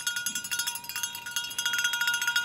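A small handheld cowbell shaken rapidly, its clapper striking the metal in a fast, continuous run of clanks.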